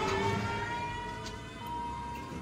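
Train horn sounding one long, steady note, with a short break about one and a half seconds in before it resumes.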